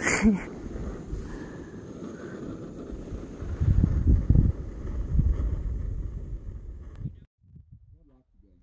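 Wind buffeting the microphone: a gusting low rumble, strongest a few seconds in, that cuts off suddenly near the end.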